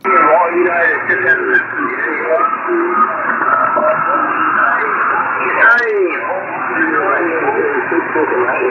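A shortwave radio receiver full of many stations calling at once, a pile-up of overlapping, unintelligible voices: the 'shouting' of dozens of operators answering the same call. The voices come through the radio's speaker thin and narrow-band, without a break.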